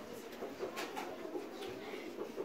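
Doves cooing, low repeated hoots heard faintly in a hushed room, with a couple of soft clicks about a second in.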